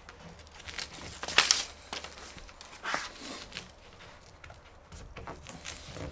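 Adhesive-backed truck cap seal strip being peeled from its paper backing and pressed onto the cap's edge: scattered rustling and crinkling of the backing, with a few sharp ticks, the sharpest about one and a half seconds in.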